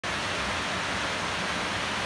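Waterfall: water rushing steadily in an even hiss.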